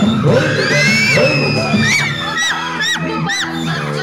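Song music playing loudly, with a crowd of children shouting and cheering over it. From about halfway through comes a run of short, high rising-and-falling shouts, about three a second.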